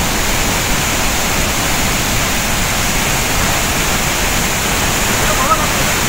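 A waterfall in heavy monsoon flow, pouring and crashing in a loud, steady rush of water.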